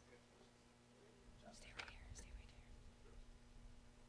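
Near silence: a steady low hum, with a quiet spoken or whispered word about a second and a half in.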